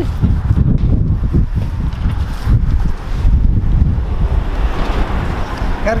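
Wind buffeting the microphone, an irregular low rumble.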